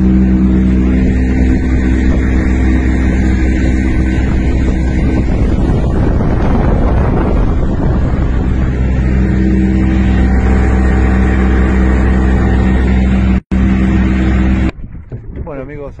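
Mercury 50 outboard motor running the boat at speed, a loud steady drone with wind rushing over the microphone. It cuts off abruptly near the end.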